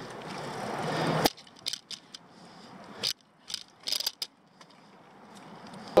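Rushing riding noise that swells and cuts off suddenly about a second in, then scattered short mechanical clicks and rattles from a bicycle's drivetrain and freewheel ratchet.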